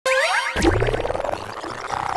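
Cartoon-style sound effects for an animated logo intro: a quick upward glide, a sharp hit about half a second in, then two rising, rapidly pulsing tones.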